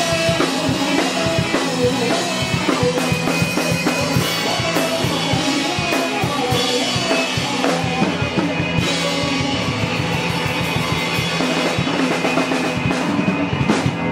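A rock band playing live: a drum kit with steady hits, electric guitars, and a young male lead singer.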